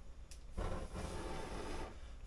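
A soft hiss lasting about a second and a half, after a brief click, as a small stove is lit with a match.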